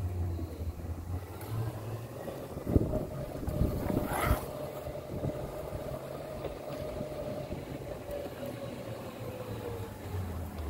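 Golf cart driving along: a steady low running hum with a thin whine from about three seconds in that sinks a little in pitch near the end. Two sharp knocks about three and four seconds in are the loudest sounds.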